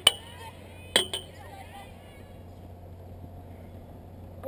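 Sharp, hard clacks of lacrosse gear close to the microphone: one right at the start and two quick ones about a second in, each ringing briefly, with faint voices of players in the distance.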